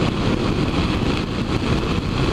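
BMW F650ST Funduro motorcycle's single-cylinder engine running steadily at highway cruising speed, mixed with road and wind rush.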